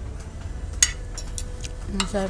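Metal spoon and fork clinking and scraping against a ceramic plate while cutting food: a handful of short clicks, the sharpest about a second in.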